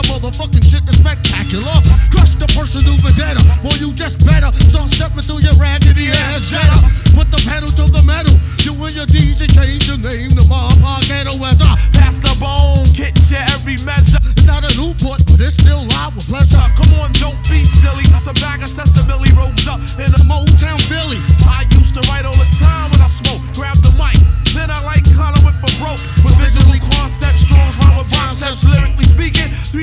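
Hip hop track: rapping over a beat with a heavy, regular bass pulse.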